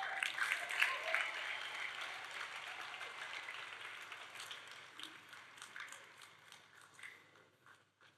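Congregation applauding, the clapping dying away over several seconds to almost nothing near the end.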